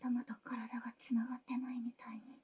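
A woman's voice speaking softly in short, broken phrases: a character's dialogue in the anime episode.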